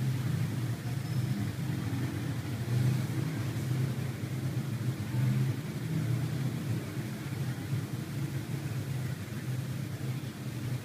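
A steady low motor-like hum that wavers slightly in level, with faint rustling as fabric is spread out by hand.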